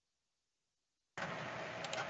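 Dead silence, then about a second in a steady hiss of microphone and room noise cuts in abruptly as the audio track comes on.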